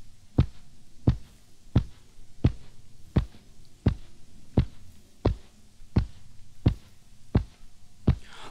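Soft, heavy thuds at an even pace, about one every 0.7 seconds, eleven or so in all, over a low hum: a story-record sound effect of mattresses being laid down one on top of another.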